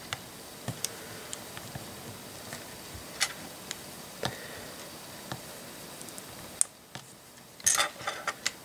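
Small plastic LEGO curved slope bricks clicking and tapping as they are handled, pressed together and set down on a tabletop: a dozen or so short, sharp, scattered clicks, with a quick cluster of clicks near the end.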